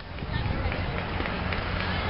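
Indistinct voices of spectators and players at a softball field, faint over a steady low background rumble.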